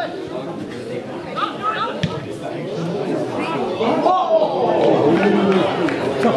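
Several people's voices talking and calling out over one another at a football pitch, with a short knock about two seconds in.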